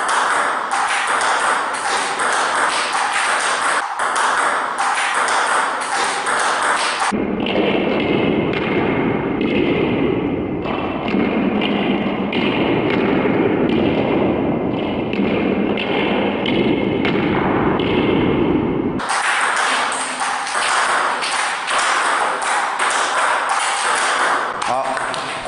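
Table tennis ball in a rapid multi-ball drill: a quick run of sharp clicks as the ball is struck with backhand 'tear' (反手撕) topspin strokes against no-spin or light-topspin balls and bounces on the table. From about seven seconds in until about nineteen seconds in, a steady rushing noise sits under the clicks.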